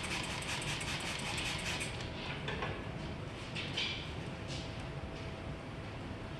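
Plastic trigger spray bottle squirting soap solution onto a truck door to neutralize caustic oven cleaner: a quick run of hissing sprays in the first two seconds, then a few single spray bursts.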